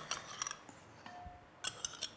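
A table knife faintly clicking and scraping against a small glass jar as butter is scooped out, a few light clinks near the middle and again near the end.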